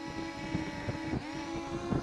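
Parrot Anafi quadcopter hovering close by, its motors and propellers giving a steady high-pitched whine. The pitch dips slightly about halfway through as the motors adjust.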